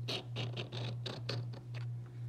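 A chunk of pyrite scraped repeatedly across a porcelain streak plate, making a quick series of short, gritty scratching strokes, about five a second. The strokes stop just before the end.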